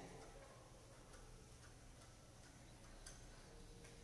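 Near silence with a few faint, irregular ticks and scratches of a pen writing on paper.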